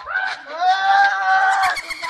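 A person screams loudly in fright: a short rising cry, then one long high-pitched scream held for over a second.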